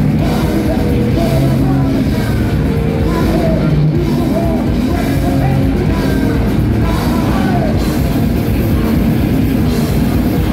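Thrash metal band playing live: distorted electric guitars, bass and drums in a dense, unbroken wall of sound, with the singer shouting vocals over it.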